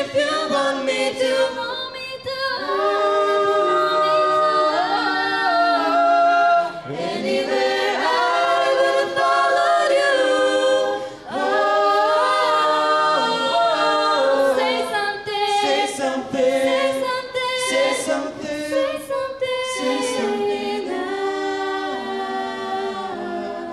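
Mixed a cappella vocal group of women and men singing a slow ballad in close harmony through microphones, with no instruments. The chords are held long and break off briefly about six and a half and eleven seconds in.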